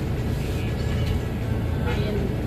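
Steady low rumble of a vehicle engine idling, heard from inside the van's cabin.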